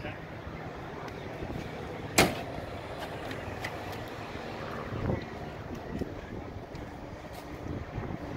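Steady outdoor background noise with a sharp click about two seconds in and a duller thump about five seconds in.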